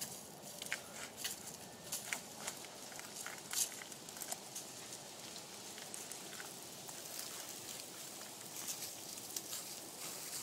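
Scattered scuffs and crackles of a person climbing a tree trunk on a rope, shoes scraping bark and dry leaves crunching, thickest in the first few seconds and then thinning to a faint outdoor hiss.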